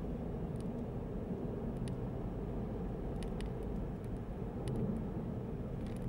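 Steady low rumble of a car driving along, heard from inside the cabin, with a few faint light ticks.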